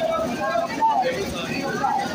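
Several women's voices overlapping close by, with no single voice standing out.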